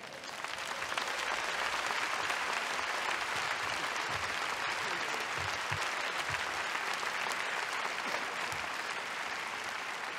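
Large audience applauding, swelling in over the first second and then holding steady.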